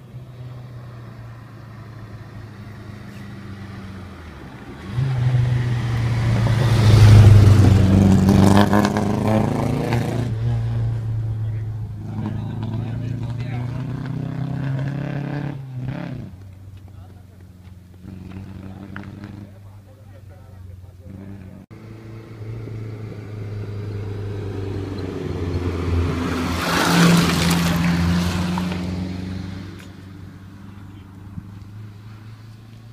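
Rally cars at speed on a tarmac stage: a car approaches and goes by loudly about five to ten seconds in, its engine revving hard through the corners, and keeps running for several seconds as it pulls away. Another car is then heard coming closer, loudest near the end.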